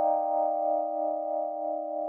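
Electric keyboard holding a chord of several notes, ringing steadily and slowly fading, with no new notes struck.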